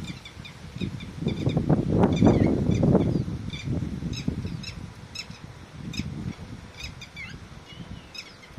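Red-wattled lapwings calling in short, sharp repeated notes, quick at first and then more spaced out. A low rumble is loudest over the first three seconds.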